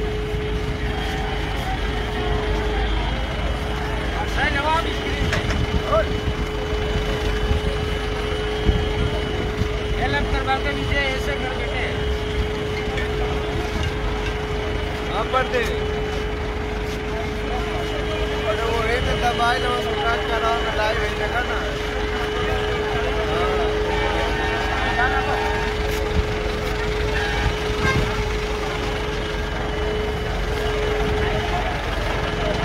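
A heavy vehicle engine running steadily, a low rumble with a constant even hum over it, under the chatter of a crowd of onlookers.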